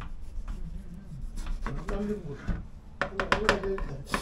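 Kitchen knife cutting a peeled potato into chips on a plastic cutting board, with a few quick clicks of the blade on the board about three seconds in. Voices talk over it.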